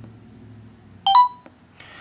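Microsoft Voice Command's listening prompt from the Samsung Intrepid's speaker: a short two-note electronic beep that steps up in pitch, about a second in. It signals that the phone is ready for a spoken command.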